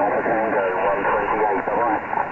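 A voice coming in over a CB radio transceiver's speaker, thin and cut off above about 3 kHz, with a hiss of static under it.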